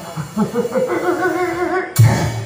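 A singer's voice in nagara naam devotional singing: quick short syllables, then a long held note with vibrato. A sharp drum stroke comes right at the end.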